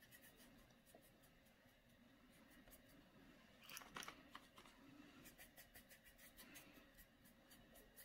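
Near silence, with faint scratching of a paintbrush crosshatching acrylic paint on a canvas board and a slightly louder scrape about four seconds in.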